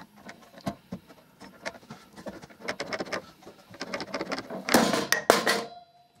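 Repeated clicks of a one-handed bar clamp's trigger being squeezed to load a glued plywood joint, then, near the end, a sudden loud crack as the unbiscuited plywood joint splits cleanly at the glue line, followed by a couple of sharp knocks as the broken piece drops.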